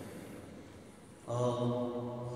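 A man's voice through the church's microphone and speakers, holding one steady, drawn-out vowel that starts about a second in, after a short lull with the hall's reverberation dying away.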